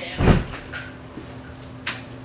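A single dull thump, then a short sharp click near the end.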